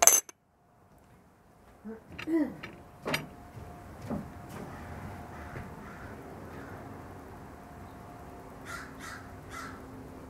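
Porcelain teapot lid set onto the pot with a sharp clink, then a few brief calls over a steady faint hum.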